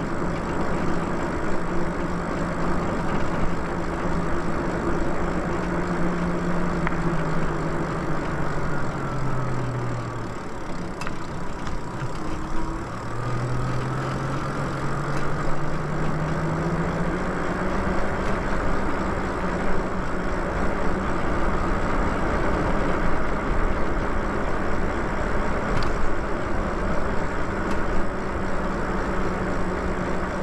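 Lyric Graffiti e-bike's hub motor whining in a steady tone over road and wind noise. About a third of the way in the whine falls in pitch as the bike slows and drops out briefly, then climbs back up as the bike speeds up again.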